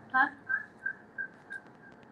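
A short spoken 'huh', then a single high whistle-like tone that repeats about three times a second and fades away with each repeat, like a ringing echo in the audio line.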